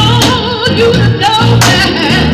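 Recorded gospel choir song playing: sung voices over a bass line that pulses about twice a second.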